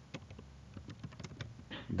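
Faint typing on a computer keyboard: a run of separate, irregular keystroke clicks as a sentence is typed.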